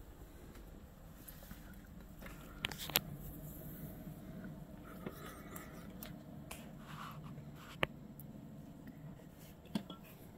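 Faint steady low rumble with a few sharp clicks and taps from handling of the handheld recorder. The loudest clicks come about three seconds in and near eight seconds.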